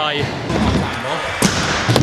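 Stunt scooter rolling across skatepark ramps, with two sharp clacks of it striking the ramp, one about a second and a half in and another near the end, in a large echoing hall.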